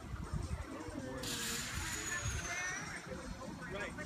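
Distant voices of people talking, with a sudden hissing rush that starts about a second in, carries a faint high whistle falling slowly in pitch, and fades out about two seconds later.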